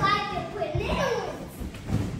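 A young child vocalizing in a high voice without clear words.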